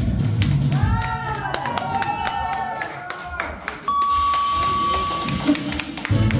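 A break in the loud stage backing music, filled with voice calls, handclaps and sharp hits, and a steady held tone for over a second past the middle; the music with its heavy beat starts back up at the very end.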